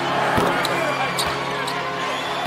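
Basketball thudding on a hardwood court a couple of times during a free throw, under steady arena background sound.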